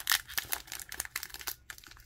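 A stack of trading cards handled in a clear plastic pack wrapper, giving irregular crinkling of the plastic with quick clicks as the cards are shifted.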